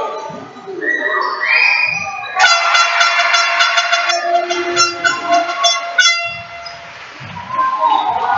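A loud horn sounds for about three and a half seconds, starting and cutting off abruptly, with shouting voices before and after it.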